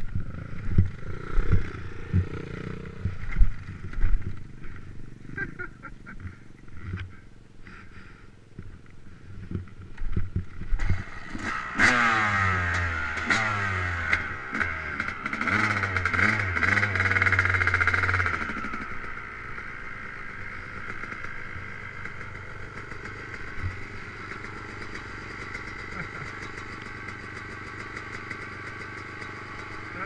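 Yamaha YZ250 two-stroke dirt bike engine: a run of sharp knocks and thumps over the first few seconds, then the engine revving up and down for about seven seconds, before settling to a steady idle for the last ten seconds or so.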